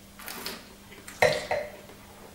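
Wine taster sipping red wine from a glass with a soft airy slurp, then two short, sharp throat-and-mouth sounds a little past a second in.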